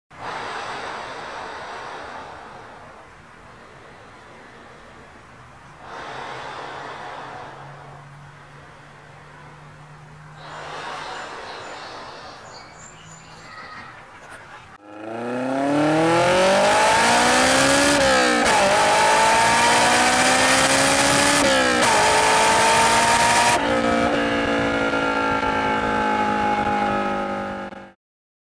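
A quieter rushing sound swells and fades a few times. Then a car engine runs at full throttle, its pitch climbing and dropping back at each of about three upshifts before it cuts off.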